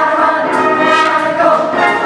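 Vocal jazz ensemble singing in close harmony through microphones, over a rhythm section of drum kit and electric bass.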